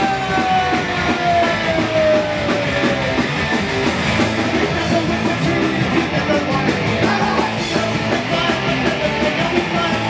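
Punk rock band playing live: distorted electric guitars, bass and drums with shouted vocals, loud and unbroken. A long note slides downward in pitch over the first few seconds.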